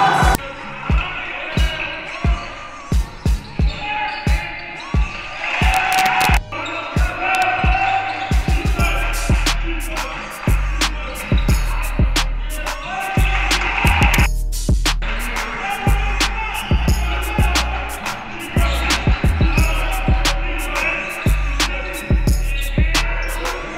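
Basketball game sounds: a ball bouncing on a hardwood gym floor and sneakers squeaking, with scattered voices. About eight or nine seconds in, music with a heavy, pulsing bass beat comes in and carries on under the game sounds.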